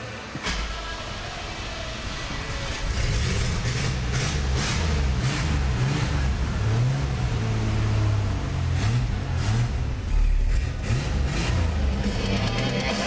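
1991 Chevy S10's 2.8-liter V6 starting about half a second in, then running and being revved up and down several times.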